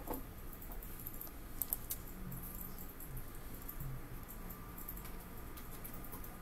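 Scattered light clicks of a computer mouse and keyboard, a few close together about two seconds in and again a little later, over a low steady hum.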